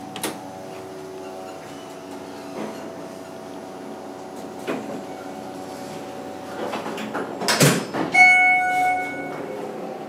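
Schindler hydraulic elevator: a click as the door-close button is pressed, then a steady hum in the car. About seven and a half seconds in, the sliding doors close with a loud clatter, followed by an electronic beep held for almost a second.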